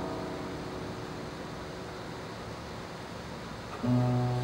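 Classical guitar chord ringing out and fading, then a quiet pause with a steady hiss of the hall. Just before the end, a new low bass note and a note above it are plucked.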